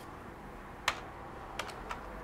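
Typing on a computer keyboard: a few scattered keystrokes, one sharper one about a second in and a quick cluster near the end.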